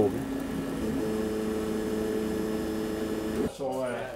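Laser cutter running as it cuts MDF: a steady machine hum that cuts off abruptly about three and a half seconds in.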